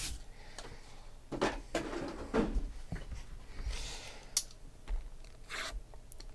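Lint roller rolled over a cloth table cover in short, irregular rubbing strokes, with a sharp click about four seconds in.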